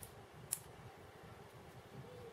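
One sharp click about half a second in from small plastic model-kit parts being handled over a cutting mat, over a faint low background hum.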